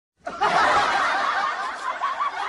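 Laughter that starts suddenly a moment in and keeps going.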